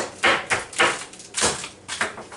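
Frozen pork chops in plastic packaging knocked against the kitchen counter, about three hard knocks half a second apart, the last the heaviest: the meat is frozen solid, hard as a rock.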